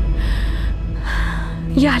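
A woman's two breathy gasps of relief over soft dramatic background music, and she begins to speak near the end.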